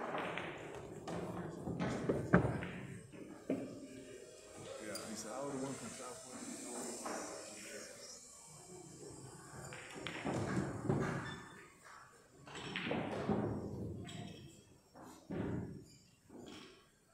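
Pool balls clicking and knocking as they roll and meet after a shot, with a single sharp click about two seconds in; voices talk in the background.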